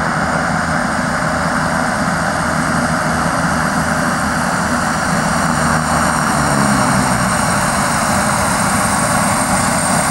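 Let L-410 Turbolet's twin turboprop engines at take-off power as the aircraft makes its take-off run, a loud steady engine noise with a thin high whine over it. The noise swells slightly about seven seconds in.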